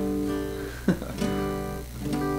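Acoustic guitar strummed: a chord struck at the start and another about a second in, each left to ring.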